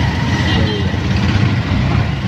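Auto-rickshaw's small single-cylinder engine running with a steady low drone as it moves through city traffic, heard from inside the open passenger cabin.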